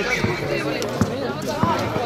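A basketball bouncing on a hard outdoor court: a few sharp thuds, the clearest about a second in and again shortly after, with people talking throughout.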